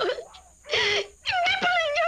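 A woman wailing in tears: a short sob, then a long wavering cry that begins about halfway through.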